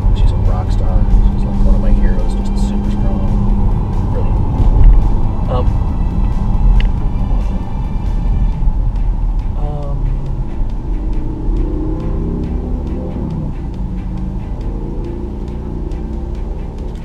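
Steady low road and engine rumble inside the cabin of an SUV being driven, heard through the in-car microphone.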